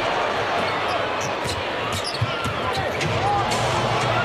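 A basketball dribbled on a hardwood court, a few bounces in the middle, with short sneaker squeaks over steady arena crowd noise.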